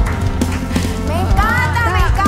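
Live norteño band music with a steady low bass and light percussive taps. A voice comes in over it in the second half.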